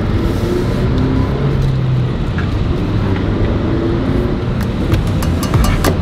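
Honda Civic Si's 2.0-litre four-cylinder engine running under way at low speed, heard from inside the cabin along with road noise, its pitch rising and falling. There are a few clicks near the end.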